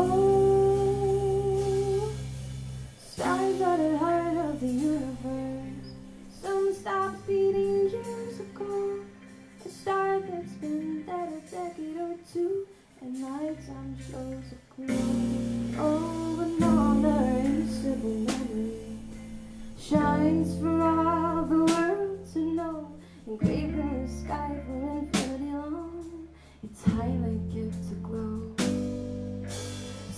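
Live small band playing a song: a woman sings the lead melody over electric guitars, drums and a low bass line, the music dipping briefly between phrases.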